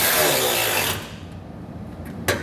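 A cordless power tool with a six-millimetre Allen bit runs a bolt in to snug it. It runs for about a second, falling in pitch as it slows and stops.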